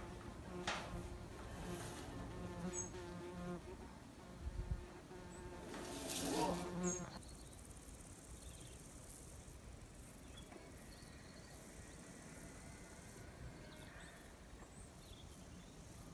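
A flying insect buzzing close by, its hum wavering in pitch for about the first seven seconds, then fading out to faint outdoor quiet.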